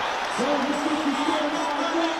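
A man's voice holding one long, drawn-out call on a steady pitch, in the style of an excited football commentator, over a steady background hiss.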